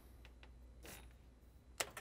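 A Sparco battery kill switch turned off with one sharp click near the end, cutting power to the whole car. A faint rustle is heard about a second in.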